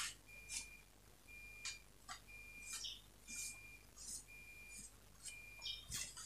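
Quiet handling of fabric on a table: soft, scattered rustles and taps. Under them, a faint high-pitched chirp repeats about once a second.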